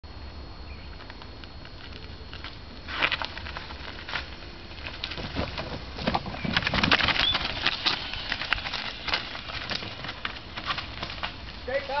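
Hardtail mountain bike ridden over a dirt trail and logs: tyres crunching on gravel and the bike clattering, building from about three seconds in, loudest in the middle as it passes, then fading. A low steady rumble of wind on the microphone underneath.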